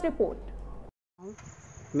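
A steady, high-pitched insect drone, one unbroken whine outdoors, begins after a brief drop to silence about a second in. A voice trails off at the very start.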